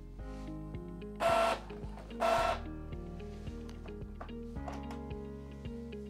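Background music, with two short, loud whirring passes about a second apart from an Epson EcoTank ET-3850 inkjet printer as it prints a colour copy.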